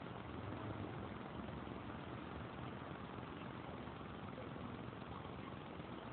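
Steady hum of city street traffic, cars passing on the road.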